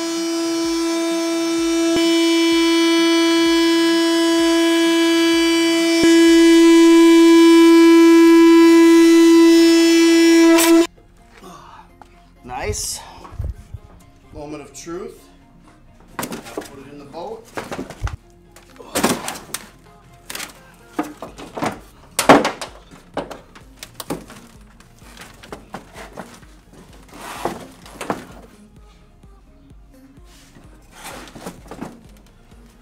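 A handheld corded power tool running at one steady, high whining pitch as it cuts through a quarter-inch rubber truck-bed liner, getting louder in two steps, then stopping abruptly after about eleven seconds. Scattered knocks and thumps from handling the mat follow, the loudest about two-thirds of the way through.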